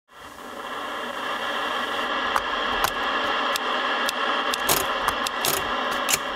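Old CRT television hissing with static, a steady hiss with a faint hum in it, fading in at the start. Scattered sharp clicks and ticks join it from about two seconds in.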